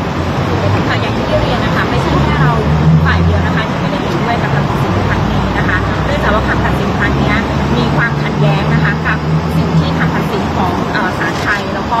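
Low, steady rumble of a motor vehicle engine that comes in about a second in and fades out near the end, under people talking.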